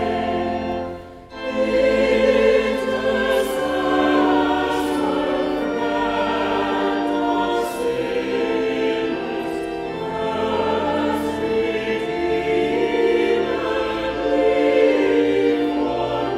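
Small choir of women singing a hymn in held, sustained notes, with a brief break for breath about a second in.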